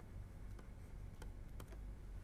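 Faint, scattered clicks and taps of a stylus on a pen tablet during handwriting, over a low steady hum.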